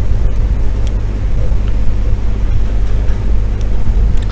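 Steady low electrical hum with a faint hiss, with a few faint clicks here and there.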